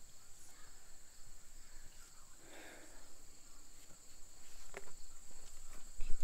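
Steady high-pitched drone of insects trilling in grass and trees, with a faint rustle about halfway through and a brief tick near the end.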